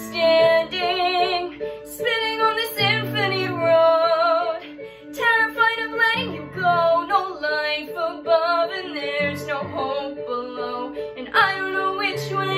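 A young woman singing a musical-theatre song solo, holding long notes with vibrato, over instrumental accompaniment.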